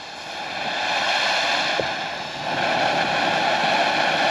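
Ajax the Anteater consumer ground fountain firework from Miracle's Zoo Box spraying sparks: a steady rushing hiss that builds over the first second, dips briefly midway, then carries on evenly.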